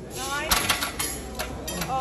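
Wordless men's voices calling out during a heavy set of curls, with several sharp clicks or clanks; the loudest clank comes about half a second in.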